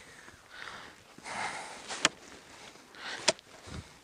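Footsteps crunching through snow on a frozen lake, with two sharp knocks, about two seconds in and again just after three seconds, of an ice probe jabbed into the ice to test its strength. The ice here is thin and soft, and the probe breaks through to water by the second strike.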